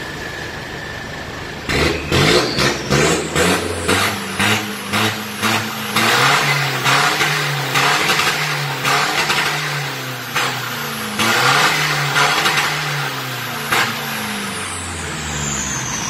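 Pickup's 1.9-litre diesel engine with an upgraded aftermarket turbocharger idling, then revved again and again in short blips, each blip with a rush of turbo air. Near the end a high whistle falls steeply in pitch as the turbo winds down.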